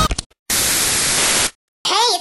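A burst of TV static, about a second long, that starts and cuts off sharply between two brief silences: the sound of a television being switched to another channel.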